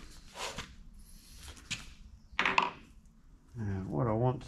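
A mallet knocking on a lathe's steel cross slide while a gib strip is being fitted: a soft knock under a second in and a louder, slightly ringing knock a little past halfway. A man's voice starts just before the end.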